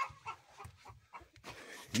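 Chickens clucking faintly, a few short scattered clucks.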